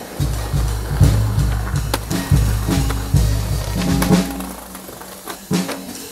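A jazz drum-kit track plays together with a skateboard: its wheels roll on pavement, with a few sharp clacks of the board, the clearest about two seconds in.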